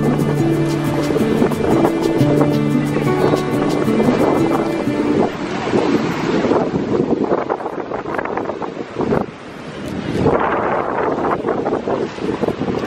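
Background music with held notes for about the first five seconds, then it ends, leaving wind buffeting the microphone and surf breaking on a pebble beach.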